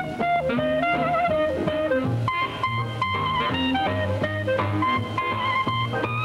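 Jazz clarinet solo of quick runs of short notes, with the band accompanying underneath and a bass line moving below.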